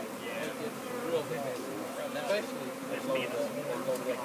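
A swarm of honey bees buzzing: a dense, steady hum of many bees at once, its pitch wavering around one note.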